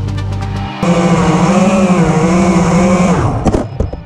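Electronic background music cuts off under a second in, giving way to a homemade FPV racing quadcopter's brushless motors and propellers whining, the pitch wavering up and down with the throttle. Near the end the motors spin down in a steep falling glide with a knock, as the drone lands and stops.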